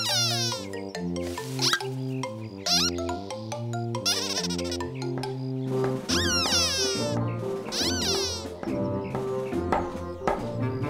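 Bouncy children's cartoon background music with a stepping bass line, over which small cartoon creatures let out high, squeaky gliding chirps several times.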